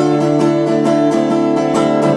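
Live band playing an instrumental stretch between sung lines: a steadily strummed acoustic guitar over electric bass.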